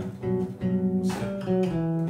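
Electric bass played by hand, ringing sustained notes that change a few times and step down near the end. It demonstrates the avoid note, the fourth, sounding against a G7 chord, which is not pleasant to the ear.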